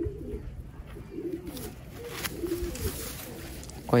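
Domestic pigeons cooing: several low, warbling coos one after another.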